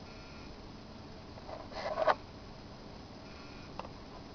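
Low room tone as a small plastic solar phone charger is handled. There is a brief rustle about halfway through and a light click near the end as it is set down.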